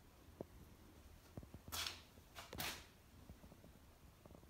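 Faint handling noises: a few soft clicks, then two short hissing swishes just under a second apart around the middle.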